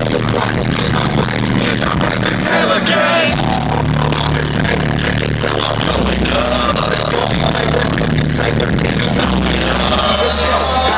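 Loud live hip hop music over a concert sound system, recorded from inside the crowd on a phone's microphone: long held bass notes with a vocal over them.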